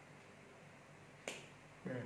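A single sharp click a little past a second in, then the start of a brief syllable from a man's voice near the end, over faint room hiss.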